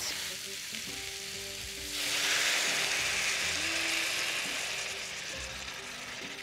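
Zucchini, tomatoes and orzo sizzling in a stainless steel skillet as broth is stirred in with a spatula, the first stage of cooking the orzo like a risotto. The sizzle grows louder about two seconds in, then slowly eases off.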